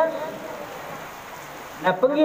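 A steady, even hiss in a pause between a man's spoken phrases. His voice trails off at the start and comes back just before the end.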